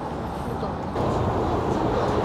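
Steady outdoor background noise, getting a little louder about a second in.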